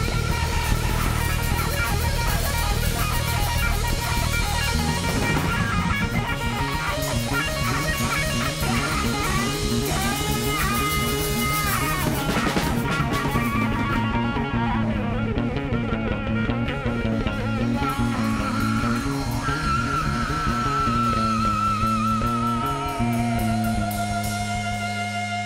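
Psychedelic rock band playing: an electric guitar leads over drums and bass guitar. Bent guitar notes come about halfway through, and a wavering held note comes near the end.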